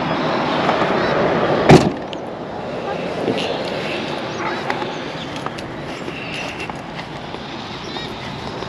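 A Jeep's swing-out rear door slammed shut about two seconds in, one loud thud over a steady rush of outdoor noise.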